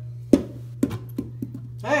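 Homemade polymer bouncy ball dropped onto a hard surface: one sharp impact, then three smaller, quicker bounces. The ball is still sticky and not yet dried, so it bounces only a little.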